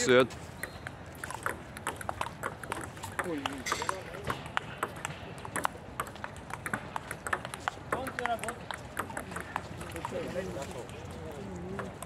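Table tennis ball in a rally, a long series of sharp clicks as it strikes the paddles and bounces on the table, with faint voices behind.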